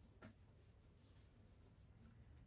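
Near silence: room tone, with a faint brief rustle of a paper catalogue sheet being picked up off a counter near the start.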